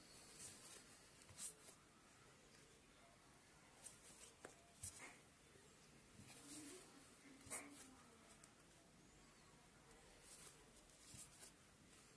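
Near silence with faint, scattered soft clicks and scratchy rustles of a steel crochet hook pulling yarn through single-crochet stitches.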